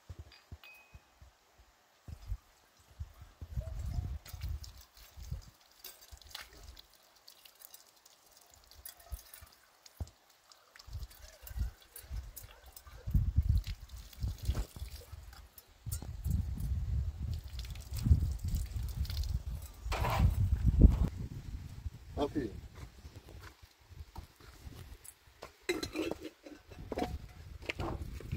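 Water trickling from the tap of a plastic water tank as something is rinsed under it, with light clinks. Heavy low rumbling buffets the microphone through much of the second half.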